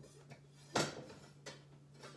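Metal knives and kitchen utensils clinking as someone rummages through them for a chef's knife. There is one sharp clink a little before the middle and a lighter one near the end, over a faint steady low hum.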